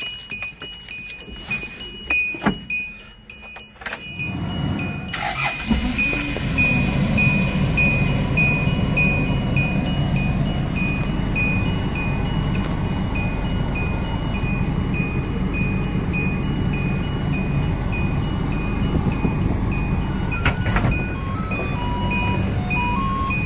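A 2003 Hyundai Grace van's engine starts about four seconds in, after a few clicks, then idles steadily, heard from the driver's seat. A dashboard warning chime beeps repeatedly all the while.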